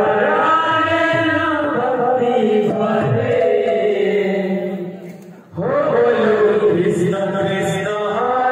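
Male voices singing a kirtan chant. The singing fades briefly about five and a half seconds in, then comes back in at full strength.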